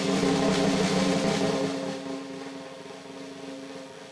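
A live band's held chord ringing out together with a cymbal wash, loud at first and fading away from about halfway through.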